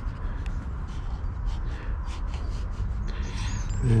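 Graphite stick scratching on sketching paper in a series of short strokes, over a steady low rumble.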